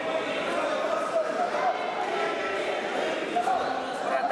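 Many voices chattering at once, indistinct and echoing in a large sports hall.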